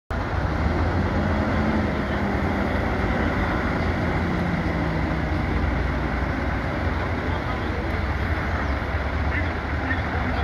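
Scania truck tractor unit's diesel engine running as it pulls slowly forward, a steady low rumble.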